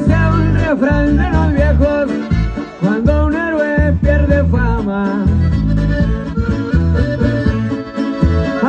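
Norteño band playing live: a button accordion carries the melody over strummed acoustic guitar and electric bass, with a steady bass-heavy beat.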